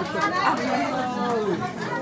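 Chatter: several people talking at once, with no music playing.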